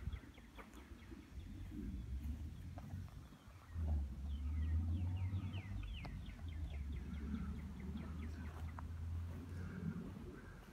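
Birds chirping: many short, downward-sliding chirps throughout. A low rumble sets in underneath about four seconds in.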